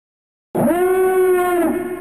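One long, voice-like held note that swoops up at its start about half a second in, holds steady, then dips slightly and fades, opening an intro jingle.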